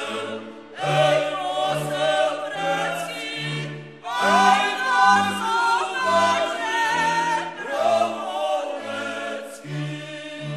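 Polish góral (highland) folk song: several voices singing together over band accompaniment with a stepping bass line, sung phrases starting about a second in and again about four seconds in.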